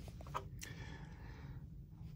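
Quiet room tone with a low steady hum and one faint click a little over half a second in.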